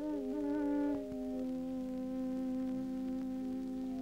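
Soft background film music: several long held notes sounding together as a chord, wavering slightly in the first second, then steady.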